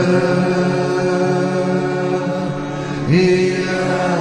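A man's voice chanting a devotional melody in long held notes, sliding up into each phrase, with a new phrase starting about three seconds in.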